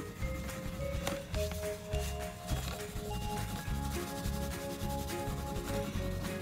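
A wax crayon rubbed back and forth over a paper-covered cardboard tube, a steady run of scratchy colouring strokes. Soft background music with held notes plays under it.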